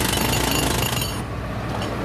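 Pneumatic jackhammer hammering rapidly into street pavement. Its sharp upper clatter cuts off about a second in, and a lower rapid rumble carries on.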